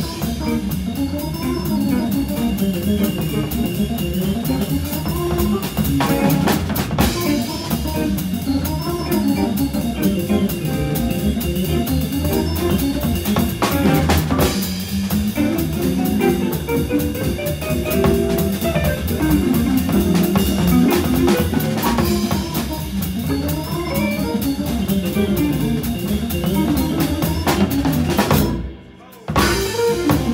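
Hammond B3 organ trio playing jazz over rhythm changes: organ lines running over a swinging drum kit, with electric guitar. Near the end the whole band stops suddenly for under a second, then comes back in.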